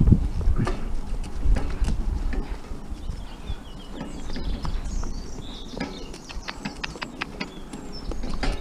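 A carriage pony's hooves clip-clopping at a walk on a dry dirt track, with knocks and rattles from the cart and harness as it goes over bumpy ground, over a steady low rumble. Birds chirp faintly in the middle.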